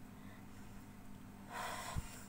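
A woman's breath, one short noisy breath about half a second long near the end, over a steady low hum.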